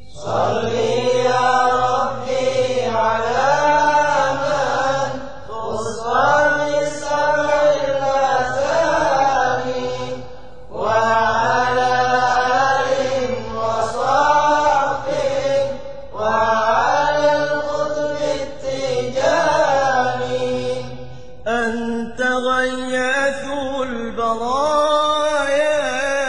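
A Tijani Sufi qasida chanted in Arabic: a melodic vocal sung in long, sliding phrases of about five seconds, with short breaks between them.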